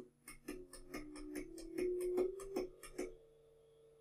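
A rapid series of switch clicks as a digital input is flipped over and over, each flip raising the running speed of a servo motor driven by a Kollmorgen AKD Basic drive by 100. The motor's whine steps up in pitch with each increase, then holds steady near the end.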